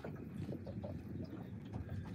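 Low wind rumble on open water with faint irregular knocks, typical of small waves lapping against a boat hull.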